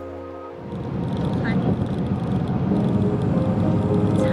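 Background music, joined about half a second in by the rumble of road noise inside a moving car's cabin, which grows louder.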